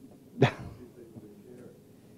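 One short, sharp burst of a person's voice, like a single clipped laugh or exclamation, about half a second in, over a low murmur of the room.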